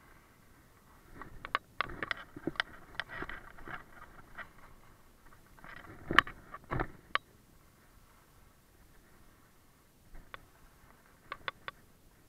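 Dull-edged skis clattering and scraping over a hard, icy piste, with bursts of sharp clacks about a second in, again around six seconds and near the end, over a faint steady hiss.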